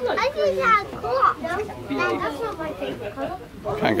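Children's voices chattering and calling out, high and overlapping.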